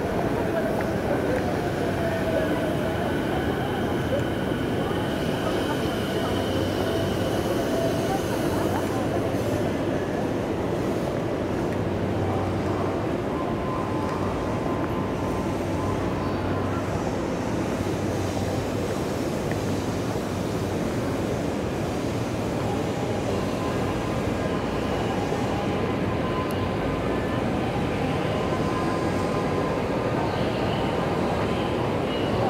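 Steady street ambience at a busy railway station, with crowd noise and passing voices and a train running on the station's tracks.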